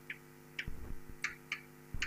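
Chalk writing on a blackboard: a few short ticks and scrapes as strokes are drawn, over a steady electrical hum.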